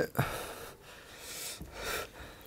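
A lull between speech filled with breathing: a short, sharp breath just after the start, then soft breath noise.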